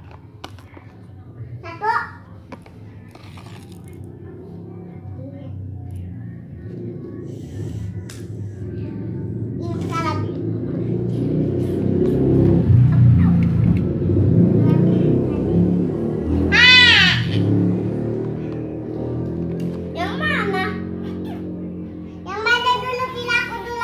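Children's voices and shouts in the background over a low rumbling hum that builds through the middle and then eases off, with one loud high-pitched call near the end.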